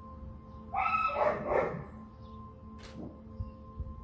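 A loud pitched animal call about a second in, lasting about a second, over soft background music with steady held tones.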